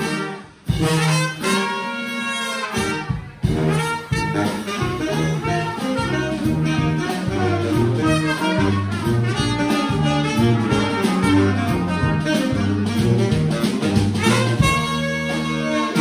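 New Orleans-style brass band playing: trumpets, trombone and saxophone over sousaphone and drum kit. It opens with two long held ensemble chords, each cut off by a brief break, then settles into a steady groove with the sousaphone bass stepping between notes.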